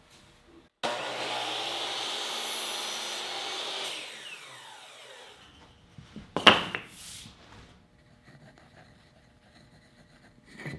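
Hitachi miter saw starting suddenly and running steady for about three seconds as it cuts through wooden molding, then winding down with a falling whine after the trigger is let go. A sharp knock follows about a second later.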